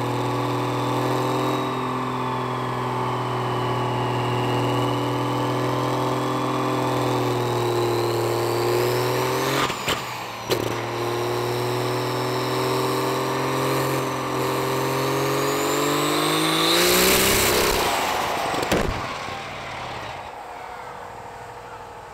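Compound-turbo Cummins diesel pickup under full load on a chassis dyno, with a turbo whistle over the engine note. The note holds steady, two sharp cracks come about ten seconds in, and the pitch then climbs to a loud rushing burst at about 17 seconds. A sharp crack follows a second later and the engine note falls away: the engine failure that ended the run in a fireball, leaving the engine bay pouring smoke.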